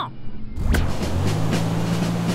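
Cartoon sound effect of a military off-road truck's engine as it drives through floodwater: a sudden rush of noise just under a second in, then a steady low engine drone that steps up slightly in pitch, over background music.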